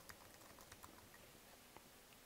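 Faint computer keyboard typing: several quick keystrokes in the first second, then a lone click near the end.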